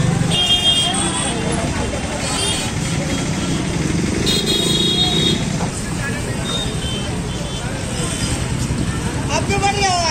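Busy street traffic: motorcycle and vehicle engines running steadily, with a vehicle horn tooting briefly about half a second in and again for about a second near the middle, over the voices of people around.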